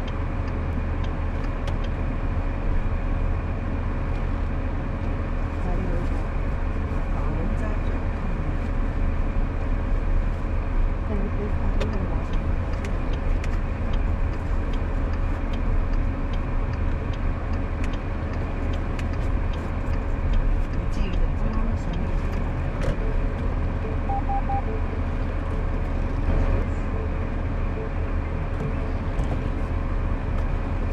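Busy street ambience: a steady low vehicle rumble with a constant mid-pitched hum, indistinct voices of passers-by and scattered light clicks and knocks.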